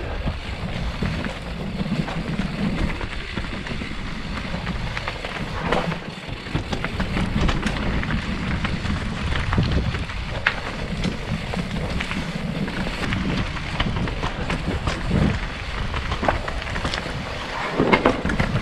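Mountain bike rolling down a rocky singletrack: tyres crunching over stones and dirt, with frequent short knocks and rattles from the bike over rough ground, over steady wind noise on the microphone.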